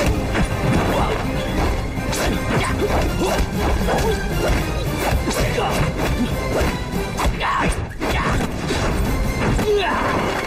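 Dubbed martial-arts fight sound effects over action music: many punch, block and body-hit impacts in quick succession.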